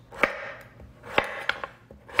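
Chef's knife slicing a delicata squash into half-moon pieces on a wooden cutting board: three cuts, each ending in a sharp knock of the blade on the board, the first just after the start and two close together about a second in.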